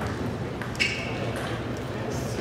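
Table tennis ball ticking off bats and the table in play, four sharp ticks spread over about a second and a half, one with a short ring, over a murmur of voices.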